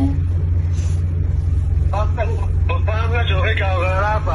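A steady low hum runs throughout. A voice starts speaking about halfway through.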